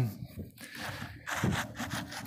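Leather work glove rubbed across dry, gravelly dirt: a rough scraping that starts about half a second in, with small rocks being knocked loose.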